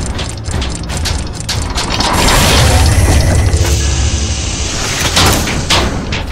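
Sound-effect track for an animated intro of turning machine gears: ratcheting clicks and metallic clanks over a deep rumble, with music underneath. A couple of louder hits come near the end.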